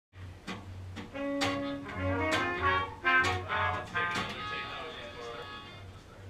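Trumpet and trombone playing held notes over acoustic guitar strums and bass guitar, a short loose band passage that tapers off over the last couple of seconds.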